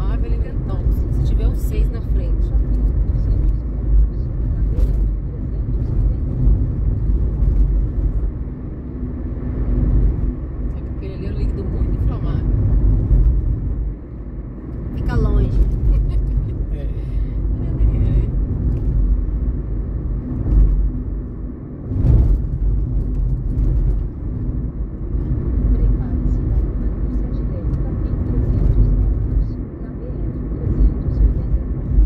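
Car driving along an avenue, heard from inside the cabin: a steady deep rumble of engine and tyre noise on the road, rising and falling slightly.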